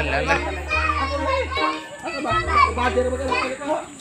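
Children's voices shouting and chattering, over background music with low bass notes.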